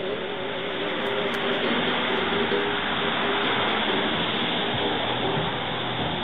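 Steady rushing noise, swelling slightly in the first second and holding even after that, with a faint trace of the earlier music fading out beneath it.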